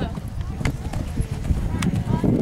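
Hoofbeats of a horse cantering on arena sand, a few separate thuds and clicks over a low rumble.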